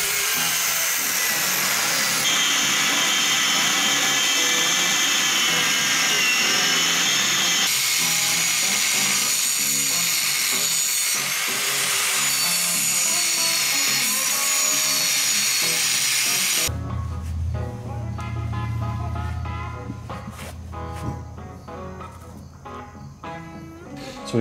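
Angle grinder with a cutoff wheel cutting through the steel of a truck's factory front spindle. Its whine rises and falls in pitch as the wheel bites into the metal, across several cut-together stretches. About seventeen seconds in it stops abruptly and gives way to quieter background music with a low bass line and guitar.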